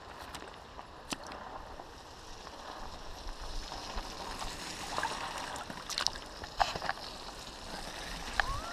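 Shallow stream water running past a microphone held just above the surface, with mountain bike tyres splashing through the ford as riders cross; the splashing grows louder in the second half, with a few sharp splashes about six to seven seconds in.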